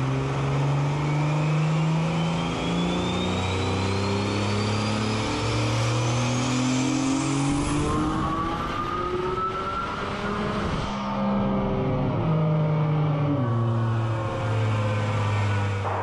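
Turbocharged 3.7-litre Nissan VQ V6 in a 240SX making a pull on a chassis dyno. Its engine note climbs in several steps, each followed by a drop in pitch like a dual-clutch gear change, while a thin high whine rises steadily alongside. From about eleven seconds in the revs fall away to a lower, steadier running note.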